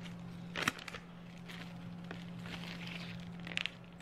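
Faint rustling and crinkling of a plastic zip-top bag as snack pieces are put into it, with one sharp tap under a second in.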